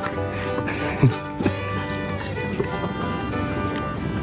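Background music with held, sustained notes, plus a short sliding sound about a second in.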